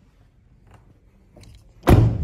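A minivan's front door being shut: a few faint clicks, then one loud slam near the end.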